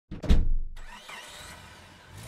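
Logo intro sound effect: a sudden heavy low hit near the start that fades over about a second into a whooshing tail with faint sliding tones.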